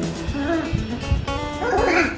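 Background music with the small yips and whimpers of four-week-old golden retriever puppies play-fighting; the loudest cry comes near the end.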